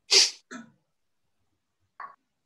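A person sneezing: one sharp, loud burst of breath, followed about half a second later by a shorter, weaker one.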